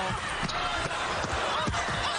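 Basketball game sound from the arena floor: a steady crowd din with short thuds of a basketball bouncing on the hardwood court.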